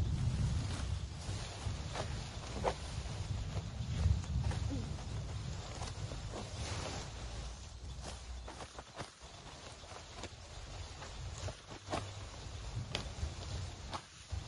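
Hand sickle cutting through stalks of tall fodder grass: irregular sharp snips and the rustle of leaves as stems are gripped and cut, over a low rumble.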